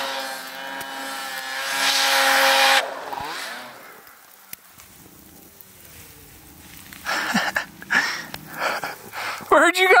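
Two-stroke snowmobile engine revved hard, swelling in loudness for nearly three seconds and then cutting off suddenly, as a sled is worked to break free in deep snow.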